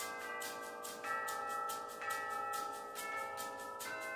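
Wind band playing a film score live: held bell-like notes over a steady, quick ticking beat of about four strokes a second.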